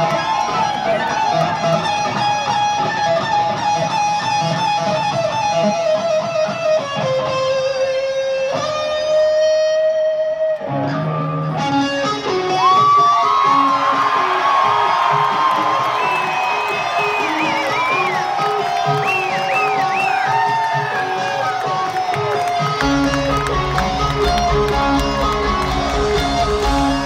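Electric guitar solo played live through an arena PA: single-note melodic lines with bent, sliding notes. A deep bass comes in near the end.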